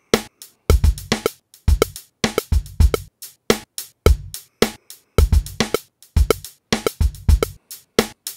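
A drum pattern played back from Studio One's Impact sampler, triggering kick, snare and hi-hat hits sliced from a drum loop, now quantized to the grid: a steady groove of deep kick thumps and crisp snare and hat hits.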